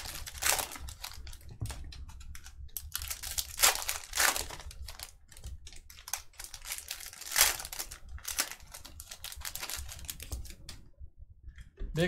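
Foil trading-card pack wrappers crinkling and cards being handled, in irregular short rustles and clicks. The sound pauses briefly shortly before the end.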